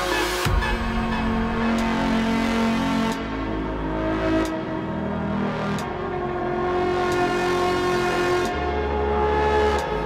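Drum and bass DJ mix: held bass and synth notes with only a few sharp drum hits.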